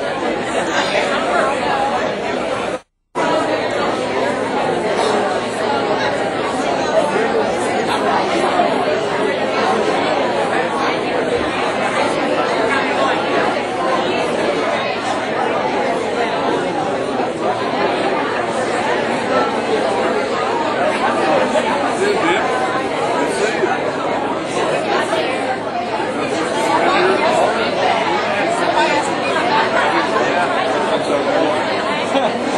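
Crowd chatter: many people talking at once in a large banquet hall, a steady hubbub of overlapping voices. The sound cuts out for a split second about three seconds in.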